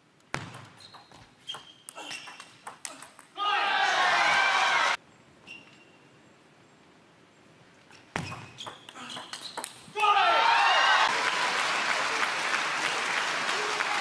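Two table tennis rallies: the celluloid-style plastic ball clicks off rubber-faced bats and the table in quick strikes. Each rally is followed by crowd cheering and clapping, a short burst about three seconds in and a longer one from about ten seconds.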